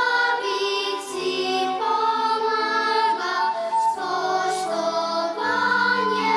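A primary-school children's choir singing together, the voices moving through a melody of held notes.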